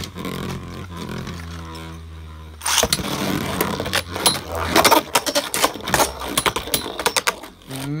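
Beyblade Burst spinning tops (a custom Void Lucifer against Vanish Fafnir) whirring in a plastic stadium, with a short laugh early on. From about three seconds in, the tops collide over and over in a dense run of sharp clicks: serious impacts.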